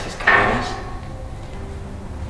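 A hard clunk with a short scrape of a small object set down on a concrete stair step, then faint handling noise.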